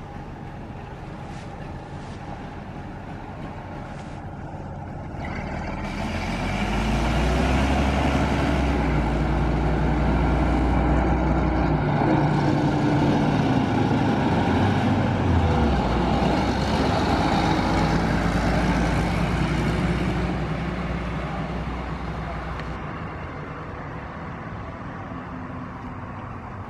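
The diesel engine of a 1982 Ikarus 280.02 articulated city bus running as the bus drives past close by. It grows louder from about five seconds in, stays loud through the middle with the engine note shifting, then fades as the bus pulls away.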